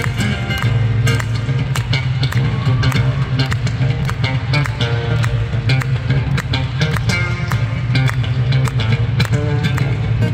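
Solo acoustic steel-string guitar played live through a concert PA in a large hall: a busy fingerpicked instrumental passage over a steady, prominent thumbed bass line, with frequent sharp percussive hits on the strings.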